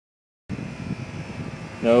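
Dead silence for about half a second, then a steady, even background hum and hiss, with a man's voice starting near the end.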